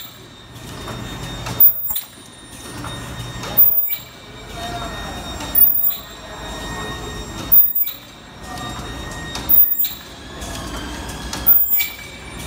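Face-mask filter making machine running automatically, working in a steady cycle: a loud sharp burst about every two seconds, each followed by a short lull, with continuous machine rattle between.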